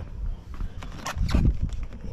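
A low, uneven rumble with a few short knocks and scuffs, as stiff motorcycle boots shift on a cardboard box.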